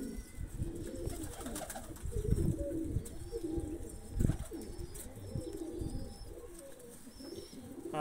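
Domestic pigeons cooing in a loft, low repeated calls from several birds, with a sudden thump about four seconds in.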